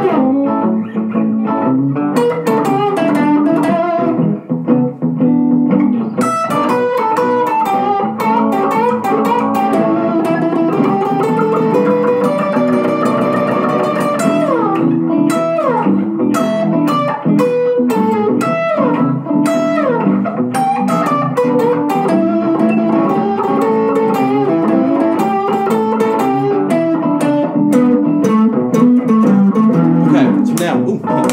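Electric guitar playing an improvised blues solo in E minor pentatonic: single-note lines that mix quarter notes, swing eighths and triplets, with a few sliding notes about halfway through.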